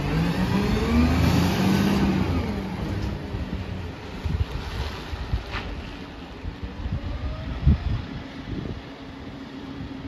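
Side-loader garbage truck's engine revving up as it pulls away, its pitch rising over the first two seconds, then running more quietly further off, with scattered knocks and thumps.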